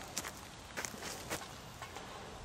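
Faint crunching steps on wood-chip mulch: a few short, unevenly spaced crackles over a quiet outdoor background.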